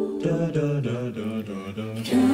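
A cappella group singing softly in close harmony, with a bass voice stepping down in short notes beneath; the fuller, louder singing comes back in right at the end.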